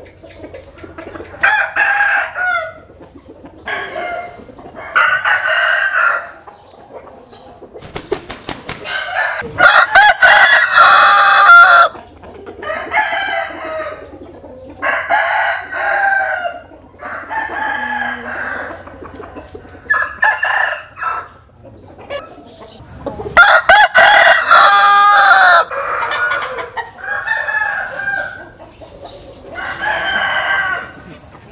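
Roosters crowing one after another, with clucking between the crows. The loudest, longest crows come about a third of the way in and again past the three-quarter mark, and a quick run of clicks comes just before the first of them.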